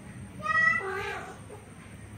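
A domestic cat's single meow, under a second long, its pitch dropping partway through.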